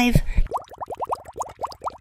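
Cartoon underwater bubble sound effect: a fast run of short rising bloops, about nine a second, starting about half a second in.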